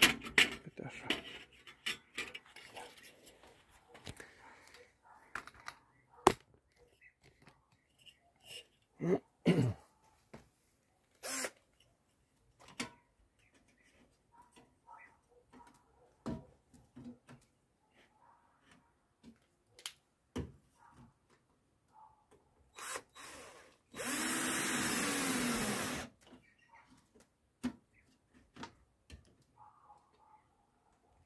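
Cordless drill/driver driving a screw: a brief burst, then a steady run of about two seconds near the end, tightening a metal angle strip down over the glass pane of a wooden observation beehive. Before it, scattered light clicks and knocks from handling the hive frame and parts.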